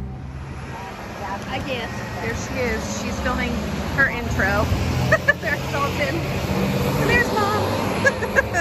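Indistinct voices of people greeting and chatting, including a high child's voice, over the low steady hum of a car engine running. A couple of sharp knocks come about five seconds in.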